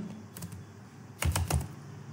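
Computer keyboard being typed: a couple of light keystrokes, then a quick run of several keystrokes a little past the middle.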